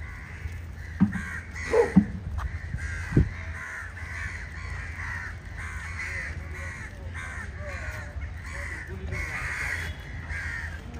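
Many crows cawing over and over, call after call, over a steady low rumble. A few louder, sharper sounds break in between about one and three seconds in.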